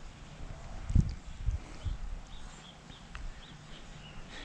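Three dull thumps about half a second apart, followed by a string of faint, short, high bird chirps.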